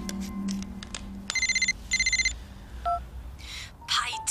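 A mobile phone ringing with an electronic trill: two short bursts a little over a second in, followed by a short beep near three seconds. Faint background music fades out early on.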